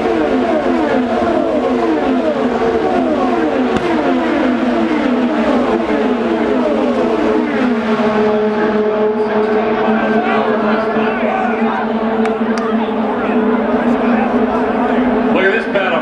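IndyCar race cars passing at racing speed, each engine's note falling in pitch as it goes by, one car after another in quick succession for the first several seconds. After that the engines hold a steadier drone.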